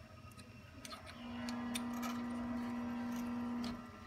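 Small metallic clicks and taps as a brass nut is fitted over a glass sight-glass tube and turned on its fitting. A steady low hum with a fixed pitch starts about a second in and stops just before the end.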